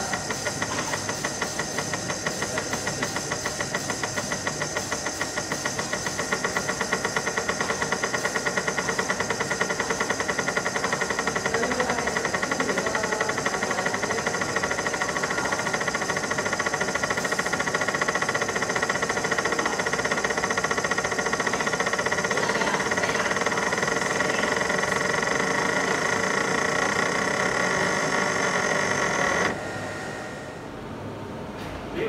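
A 3D internal crystal laser engraving machine running as it engraves inside a crystal block: a steady machine tone of several pitches with a rapid, even pulsing. It stops abruptly near the end as the engraving finishes.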